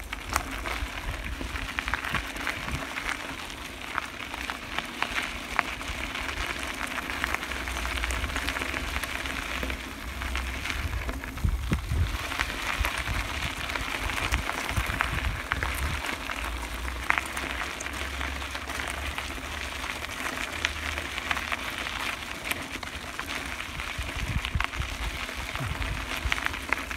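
Bicycle tyres rolling over a dirt and gravel trail: a steady crackling hiss with many small clicks, over a low rumble.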